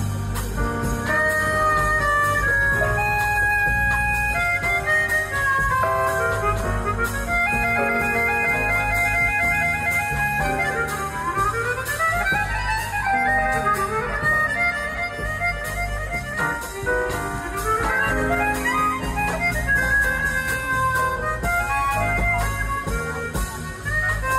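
Chromatic harmonica playing a jazz melody through a handheld microphone, over electric bass and drums from a live band.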